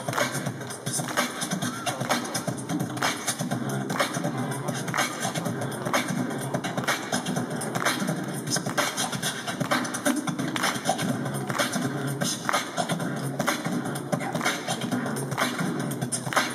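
Beatboxing into a handheld microphone, amplified through PA speakers: a continuous vocal drum beat with a steady, even rhythm.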